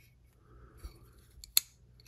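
Spyderco Manix 2 Lightweight folding knife being worked to test its ball-bearing lock after reassembly: faint handling rustle, then one sharp click about one and a half seconds in as the lock engages or releases.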